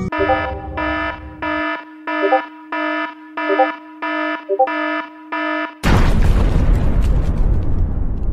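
Electronic alarm sound effect beeping about twice a second, followed about six seconds in by a sudden loud explosion sound effect that rings on and slowly fades.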